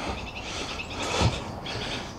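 Outdoor park ambience: a steady background noise with faint bird chirps and insect trills, and a brief low sound about a second in.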